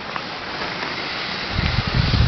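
Wind on the microphone: a steady hiss, with low rumbling gusts buffeting the microphone from about a second and a half in.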